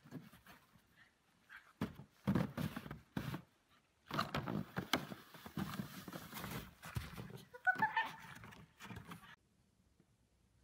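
Irregular scraping and crunching in snow as a plastic sled is dragged and shuffled over it, in bursts with short gaps, and a short high-pitched call about eight seconds in.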